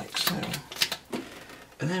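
Mostly a man's voice talking, with a quieter lull of about a second before he speaks again.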